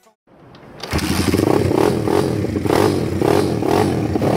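Dirt bike engine running loud with a rough, pulsing note. It builds in after a moment of silence and is at full level from about a second in.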